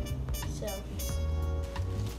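Background music with a bass line that changes notes, under a child's single spoken word.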